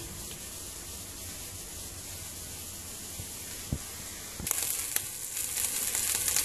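Bacon and chopped onion frying in a non-stick pan in the bacon's own fat, sizzling and crackling; it comes in suddenly about four and a half seconds in, after a faint steady hiss.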